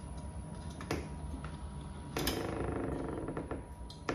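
Metal door-lever hardware being handled and fitted onto its spindle: a sharp click about a second in, then a longer rasping creak of metal parts sliding together.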